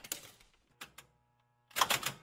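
A clatter of irregular clicks and taps, ending in a louder burst.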